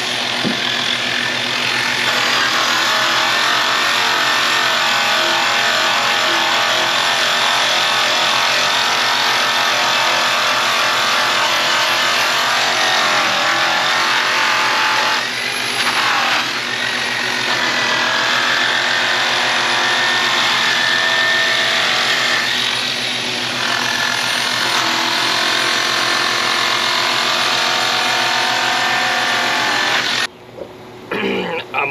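Handheld electric polisher running steadily, its pad working the aluminum trim of a semi truck's grille. The motor noise eases off briefly twice, about halfway through and again a little later.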